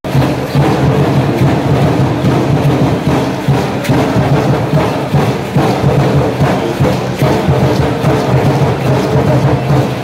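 Live music for a concheros dance: strummed conchas (small lute-like stringed instruments) and percussion with a steady run of sharp beats.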